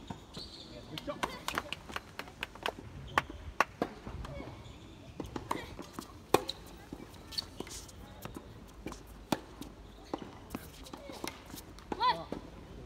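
Tennis rally: a serve, then a run of sharp racket-on-ball strikes about every second, with ball bounces on the hard court between them.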